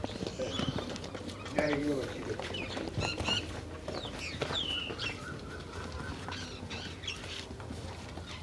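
Farmyard background: small birds chirping in short, high, gliding calls, thickest about three to five seconds in, over faint voices.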